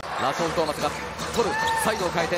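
A basketball being dribbled on a hardwood court, with a run of knocks, and shoes squeaking on the floor in short high chirps, mostly in the second half. Arena voices run underneath.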